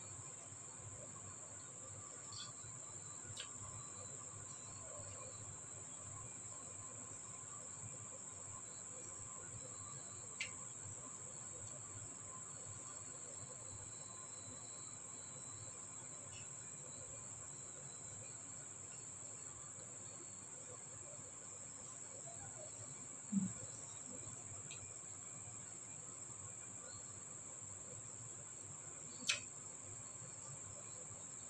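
Faint steady high-pitched buzz, with a few short soft clicks and smacks of eating rice by hand from a plate. The sharpest come about two-thirds of the way in and near the end.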